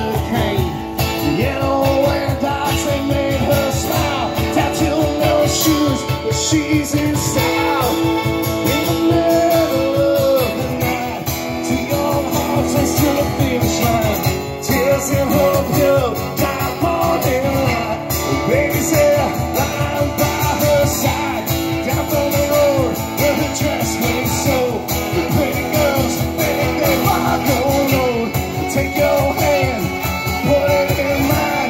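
Live band playing: a saxophone carrying a wavering melody over strummed acoustic guitar, fiddle and a steady cajon beat.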